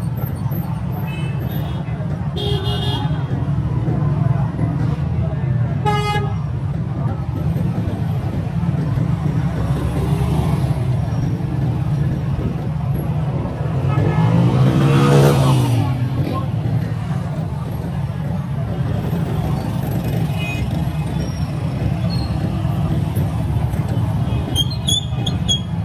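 Busy street traffic of motorcycles, auto-rickshaws and cars, with a steady engine rumble. Short horn toots sound a few times, one clearly about six seconds in. A vehicle passes close around fifteen seconds in, the loudest moment.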